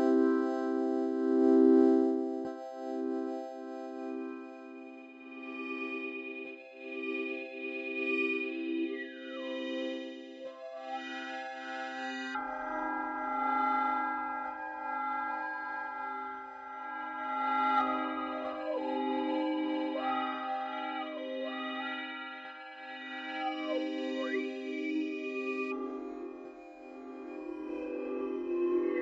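Dawesome MYTH resynthesis software synthesizer playing long sustained chords that change twice. Overtones sweep up and down through them as the mod wheel blends the dry resynthesized sound with the chorus, vowel and AM-processed signal.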